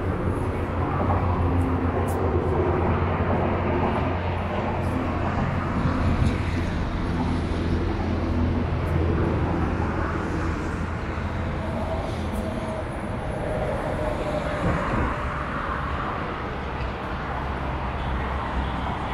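Continuous road traffic noise from a multi-lane highway: a steady low rumble of passing cars and trucks that swells and eases slightly.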